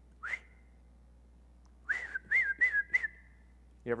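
A man whistling with his lips the way one calls a dog or other animal to come: one short rising whistle near the start, then a quick run of four chirping notes about two seconds in.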